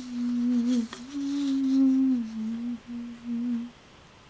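A person humming with closed lips: one low held note that dips slightly in pitch about halfway through, breaks off twice for a moment, and stops shortly before the end. A brief rustle or tap is heard about a second in.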